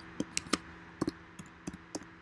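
Keystrokes on a computer keyboard typing a short word: about seven quick, irregular clicks over a faint steady hum.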